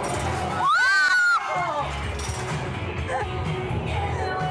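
Drop-tower ride passengers laughing and whooping over the ride's music. One long, high scream rises and falls about a second in.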